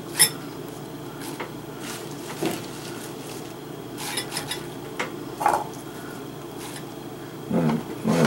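Light, scattered clinks and taps of dishes and a glass bowl as lettuce and salad vegetables are handled and put into the bowl, over a steady low background hum.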